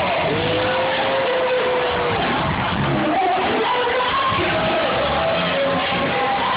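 Live band music played in a hall, heard from the audience: a long held note rises out of the mix shortly after the start and lasts about two seconds, followed by shorter melodic phrases over a steady low groove.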